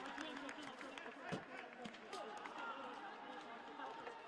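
Faint voices of players calling out across a football pitch, with a few short knocks, in an almost empty stadium with no crowd noise.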